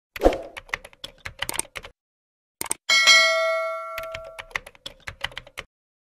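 End-screen sound effects: a rapid run of keyboard-typing clicks, then a bright bell ding about three seconds in that rings for about a second and a half, with more typing clicks under and after it.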